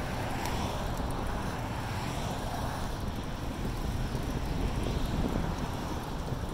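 Wind rushing over the microphone of a camera carried on a moving bicycle, a steady low rumble with a hiss above it.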